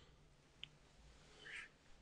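Near silence with a faint room hum, a tiny mouth click about half a second in, and a soft breath about a second and a half in.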